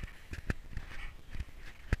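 Footsteps in snow: a few irregular crunching steps, the loudest about half a second in and just before the end.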